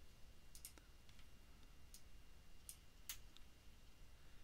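Near silence broken by about half a dozen faint, sharp clicks scattered through, from a computer mouse.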